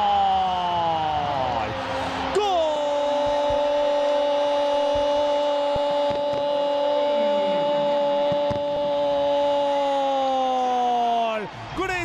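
Spanish-language TV football commentator's drawn-out goal cry. A first shout slides down in pitch, then a single long vowel is held at an even pitch for about nine seconds and drops away just before the end.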